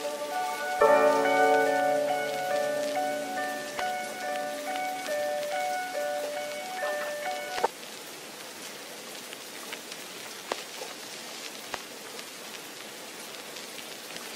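Gentle background music of sustained chords with slowly changing notes, cutting off about seven and a half seconds in, over a steady rain-like hiss with scattered light ticks that then runs on alone.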